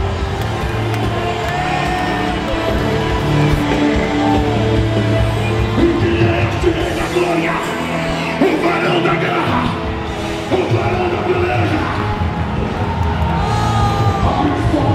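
Church worship music with held notes, and a congregation shouting, whooping and singing over it. The voices are thickest around the middle.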